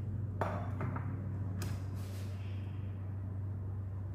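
A few light clinks and knocks from a glass food container and a kitchen knife being handled on a plastic cutting board. The loudest clink comes about one and a half seconds in and rings briefly. A steady low hum runs underneath.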